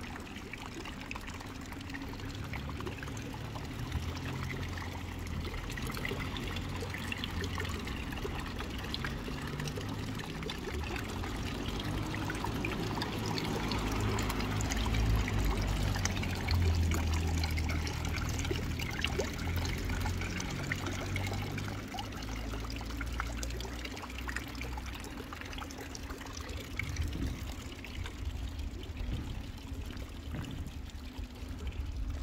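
Running water trickling and pouring, growing louder toward the middle and easing off again, over an uneven low rumble.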